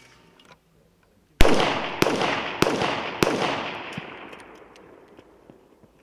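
Four rifle shots fired in quick succession, about 0.6 s apart, each echoing, the sound dying away over about two seconds after the last.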